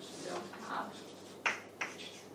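Chalk writing on a chalkboard: soft scraping strokes, then two sharp taps of the chalk against the board close together in the second half.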